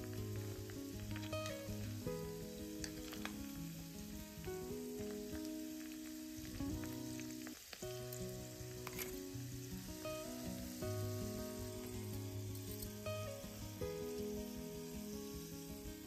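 Cauliflower pieces deep-frying in hot oil in a miniature kadai, sizzling steadily, with a few light clicks. A soft instrumental music melody plays underneath.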